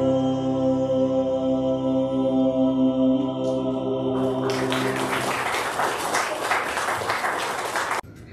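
A man's solo song ends on a long held note, which fades about three and a half seconds in. From about four and a half seconds, the congregation applauds.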